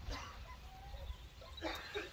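A dog barking twice, faint, about a second and a half apart.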